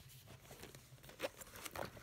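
Faint rustling and a few light taps as a small paper care booklet and a canvas handbag are handled.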